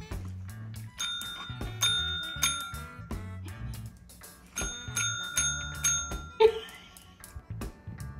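Tabletop service bell being struck, its bright ring sounding three times from about a second in and again three or four times from about four and a half seconds in, over background music. A short, louder sound comes shortly before the end.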